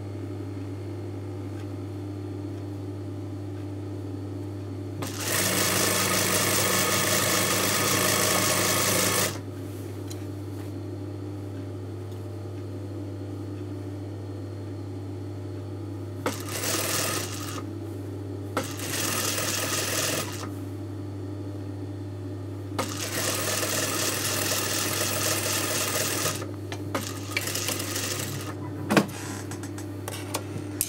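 Industrial sewing machine stitching a straight trouser-leg seam in runs: one of about four seconds, two short bursts, then another of about three and a half seconds, over a steady low hum. A few sharp clicks near the end as the thread is snipped with scissors.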